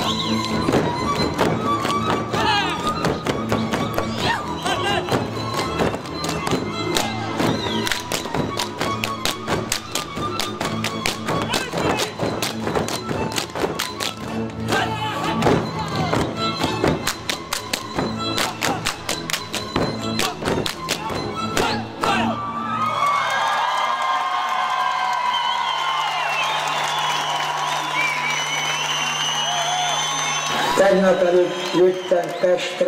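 Fiddle-led Hungarian folk band playing Kalotaszeg dance music, with many dense, rapid boot slaps and heel stamps from a group of men dancing. The music stops about three-quarters of the way through, leaving crowd noise over a low steady hum.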